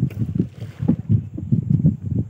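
Water slapping and lapping against the hull of a small wooden boat being poled along, a quick uneven run of low splashes about three a second.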